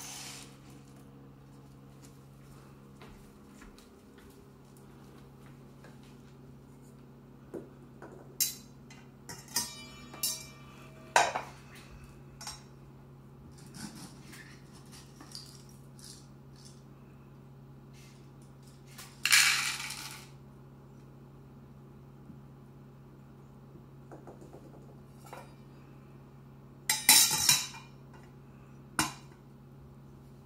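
Dry cat kibble rattling and clinking as it is scooped from a glass jar with a measuring scoop into a plastic cup, with knocks of the scoop and the jar's stainless-steel lid against the glass. The sound comes as a string of short clinks, a longer rattle about two-thirds of the way through, and a loud clatter near the end.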